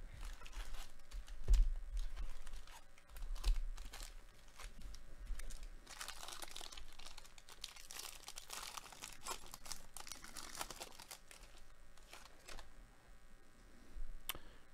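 Foil wrapper of a baseball card pack being torn open and crinkled by hand, a crackly tearing sound thick with small clicks that is loudest in the middle. A few low bumps from the packs being handled come in the first few seconds.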